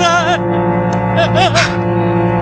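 Film background score holding sustained low string notes, with a man's wavering, anguished cries over it in two short outbursts, one at the start and one a little past halfway.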